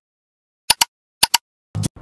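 Click sound effects from an animated subscribe banner over dead silence: two quick double clicks about half a second apart, then a short, fuller pop near the end.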